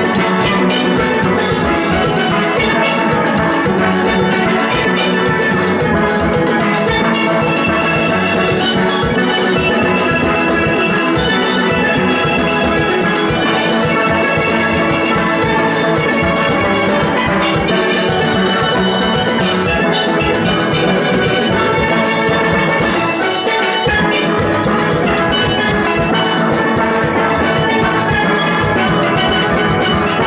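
A full steel orchestra of many steel pans playing a calypso-style tune together in rhythm, with drums keeping the beat.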